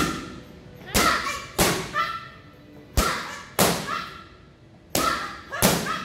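Strikes landing on a handheld martial-arts strike pad: about seven sharp slaps, several in pairs roughly half a second apart, each with a short echo.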